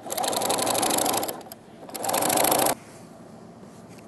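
Singer electric sewing machine stitching through layered denim in two runs of rapid, even needle strokes, the first about a second and a half long, then a short pause and a shorter second run that stops abruptly.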